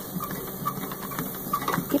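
Treadmill running steadily at a slow walking speed (1.7 mph), a low motor hum under a hiss, with faint light ticks from a dog's paws on the moving belt.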